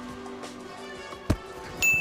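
A football smacks once into a receiver's hands and pads as a punt is caught, about a second in, over low background music.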